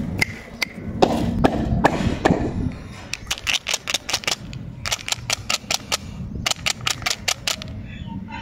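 Hard plastic clicking and clattering as a plastic umbrella-shaped candy tube filled with jelly beans is handled, with a few scattered clicks at first and then quick runs of sharp clicks in the second half.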